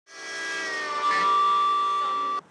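A steady, held tone made of several pitches at once, like a sustained chord, fading in over the first half second and then holding level.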